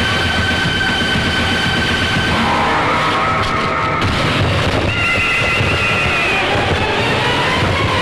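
Film soundtrack: dense, loud dramatic music with sustained high notes that shift about two and a half seconds in and again about five seconds in.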